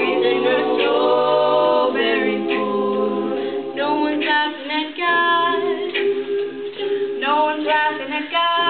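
A mixed male and female a cappella group singing in harmony, with no instruments. The lower voices hold long chord tones under a moving upper melody line.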